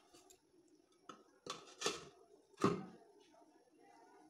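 Aluminium cookware clinking and knocking as a lid is handled and set onto a pan: four short metallic knocks over about two seconds, the last the loudest.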